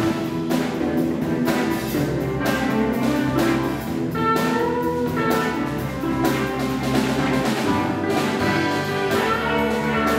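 A live rock band playing: electric guitars over bass guitar and a drum kit keeping a steady beat with cymbals.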